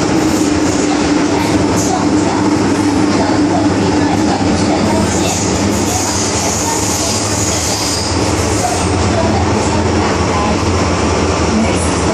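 MTR M-Train metro carriage running through a tunnel, heard from inside the car: a loud, steady rolling and running noise with a constant low hum, and a high squeal that comes and goes.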